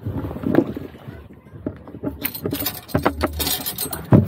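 Irregular knocks and thumps on a small fibreglass boat's hull as someone climbs aboard, with a flurry of scraping and rustling in the second half.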